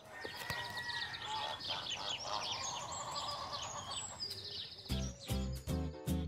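Small birds chirping and twittering in quick high calls for about four seconds, then a music track with a plucked rhythm comes in near the end.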